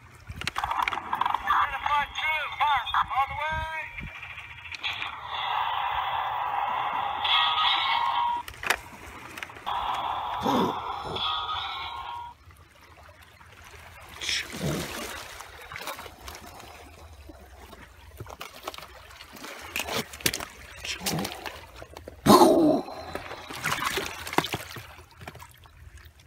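Mock gunfire sound effects for a toy battle: rapid repeated shots with sweeping pitch for about the first twelve seconds. After that comes quieter water lapping on shore rocks, broken by a few sharp splash-like hits, the loudest near the end.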